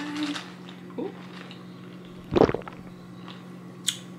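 Someone sipping iced coffee through a plastic straw: one short, loud sip about midway and a brief sharp slurp near the end, over a steady low hum.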